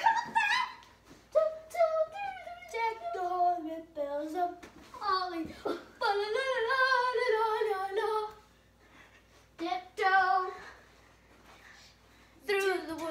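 A child singing in a string of short phrases with sliding, held notes, the longest held for about two seconds in the middle, with a couple of brief pauses near the end.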